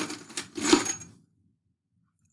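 Steel nails clinking against each other in a plastic cup: about three sharp clinks in the first second, one with a short metallic ring, then quiet.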